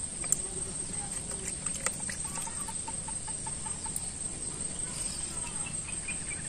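A chicken clucking in a short run of evenly spaced repeated notes, over a steady high insect drone, with a couple of light clicks.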